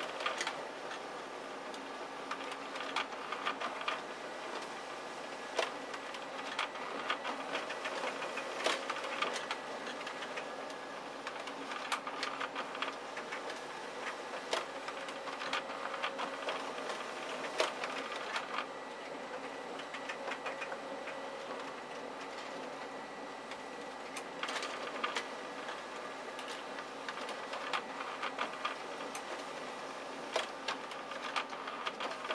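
Konica Minolta magicolor colour laser multifunction printer running a double-sided colour copy job. The document feeder draws the originals through and the print engine runs steadily, with a stream of irregular clicks and clatters from the paper handling.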